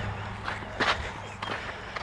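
A few soft footsteps on loose arena sand, over a low steady hum.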